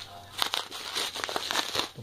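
Plastic packaging crinkling as it is handled, in irregular crackles that start about half a second in.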